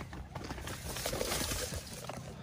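Dry corn stalks and leaves rustling and brushing past a pushed stroller, with its wheels crunching over a dirt path. The crackly hiss swells a little in the second half, then drops.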